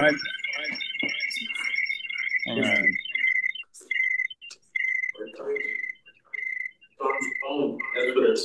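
Audio feedback ringing through a video-call link: a high whistle, steady at first, then pulsing on and off about once every three-quarters of a second from about three seconds in, with faint voices under it.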